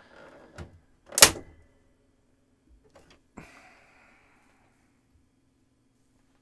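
Brittle, aged plastic tab on a Power Macintosh all-in-one's back panel snapping under prying: a small click, then one loud sharp crack about a second in, followed by faint clicks and creaks of the plastic. The crack is the tab breaking off.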